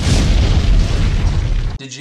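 Explosion sound effect: a loud boom with a deep rumbling tail that cuts off abruptly just before the end, as talking begins.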